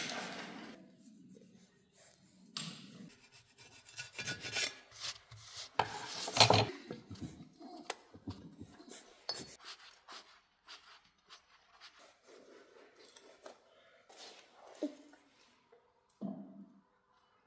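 Hand work on a truck clutch assembly: scattered metallic scrapes, rubbing and clicks as tools and a splined clutch-centering shaft are handled at the flywheel, with a few sharper knocks in the first half.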